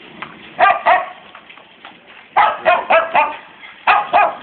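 Dogs barking in short, sharp barks: two about half a second in, then a quick run of about five in the second half and one more near the end.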